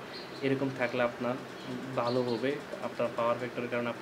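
A man speaking, in a lecturing manner, with short pauses between phrases.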